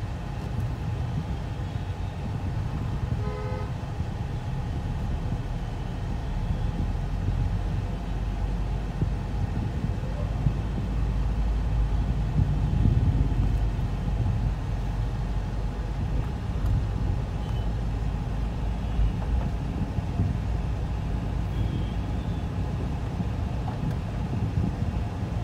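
Low road and engine rumble heard from inside a moving car's cabin, growing heavier from about six seconds in. A vehicle horn honks briefly about three seconds in.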